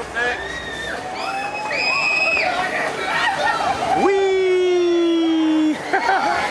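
Riders on a swinging boat ride screaming and whooping: many short high-pitched children's shrieks overlapping, then one long held cry for nearly two seconds from about four seconds in, sliding slightly down in pitch.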